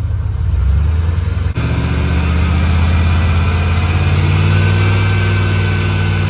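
Car engine brought up from idle and held at a steady raised speed, about 2000 to 2500 RPM, to load the alternator for a charging test. The pitch rises about half a second in, with a brief click about a second and a half in, then stays level.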